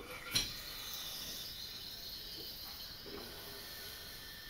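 Beer running from a bar font tap into a glass: a steady, soft hiss of beer and foam on a test pour, with a light knock just as the pour begins.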